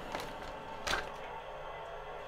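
Thin plastic bass scratchplate being lifted off the guitar body: one short clack about a second in, over a faint steady hum.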